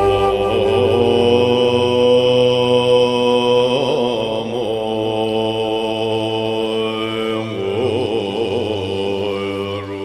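A sung mantra chant as background music: a voice holding long notes that waver about four seconds in and again near the end.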